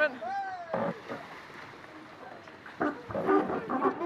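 Onboard sound of a foiling GC32 catamaran under sail: a steady rush of wind and water on the onboard microphone. Short voices call out near the start and again in the last second.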